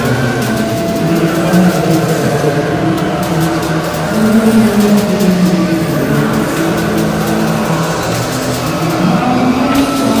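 Raw black/speed metal recording: a dense, continuous wall of heavily distorted electric guitar with drums and cymbals, loud and unrelenting.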